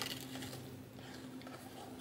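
Faint handling of baker's twine and fabric ribbon as it is being tied onto a paper box, over a low steady hum.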